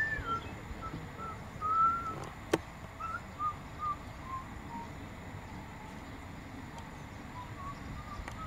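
A run of short, pure whistled notes, spaced out and falling slowly in pitch. There is a single sharp click about two and a half seconds in.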